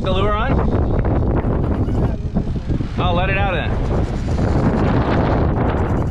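Strong wind buffeting the microphone aboard a sailboat under way. Two short warbling, wavering tones cut through it, one right at the start and one about three seconds in.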